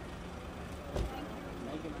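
Steady background hubbub with faint voices and a low hum, broken by a single short knock about a second in.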